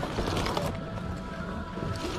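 Small clicks and rattles of goods and hangers being handled on shop racks, over faint background music.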